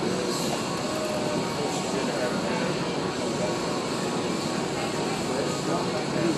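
Indistinct voices talking over a steady background hum of room noise.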